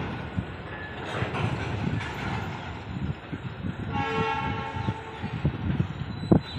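Distant locomotive horn sounding one steady note for about a second, about four seconds in, over the low rumble and irregular clatter of a train moving through the yard.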